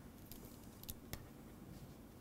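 A pen stylus faintly tapping and scratching on a tablet screen during handwriting, with a few short sharp ticks, the sharpest about a second in.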